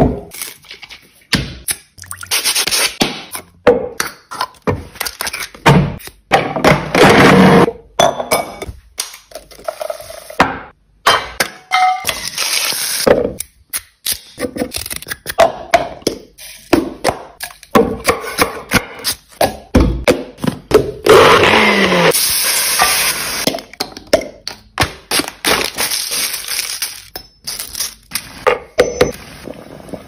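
Close-miked food-preparation sounds: many short knocks, cracks and clinks as a whole coconut is cracked open and ingredients are handled, with about two seconds of steadier noise roughly two-thirds of the way through.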